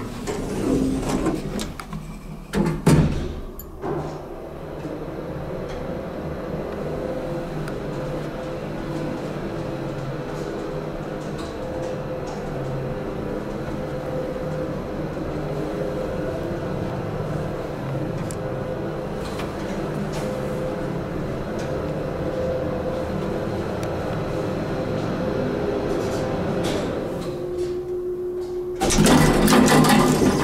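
Vintage 1967 Otis traction elevator in operation. The doors close with a knock about three seconds in, then the hoist motor runs with a steady hum and held tone, with scattered relay clicks. Near the end the hum drops to a lower tone as the car levels, and the doors open with a loud rush.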